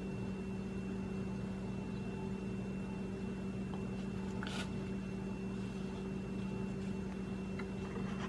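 A steady low hum with a faint thin high tone above it, and a brief soft rustle about halfway through.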